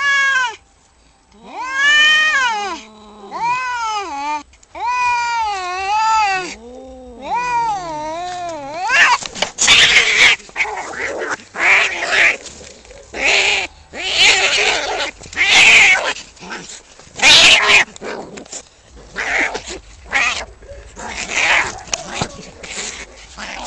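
Two domestic cats caterwauling at each other in a standoff: long, drawn-out howls that waver up and down in pitch. About nine seconds in they break into a fight, and the howls give way to harsh, noisy screeches in quick bursts.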